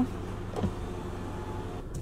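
Car engine idling, a steady low hum heard from inside the cabin, with a soft knock just over half a second in.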